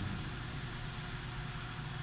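Faint steady low hum and hiss of the recording's room tone, with no voice.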